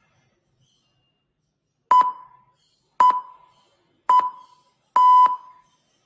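Countdown timer's electronic beep sound effect: three short beeps about a second apart for the last three seconds, then a longer fourth beep, signalling that the exercise set is ending.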